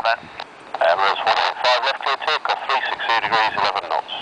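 Air traffic control radio voice heard through a handheld airband scanner's speaker, thin and tinny, coming in about a second in and running on as continuous talk.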